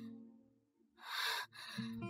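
A woman's single sharp, breathy gasp about a second in, her reaction to being slapped. Faint background music notes follow near the end.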